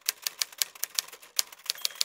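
Typewriter sound effect: quick, irregular key strikes, about six a second, with a faint high ring starting near the end.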